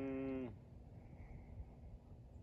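A man's thoughtful hummed "hmm", held on one steady pitch and stopping about half a second in. Faint outdoor quiet follows.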